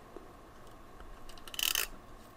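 Craft materials handled on a desk: faint handling noise, then one short, hissy rustle-scrape near the end.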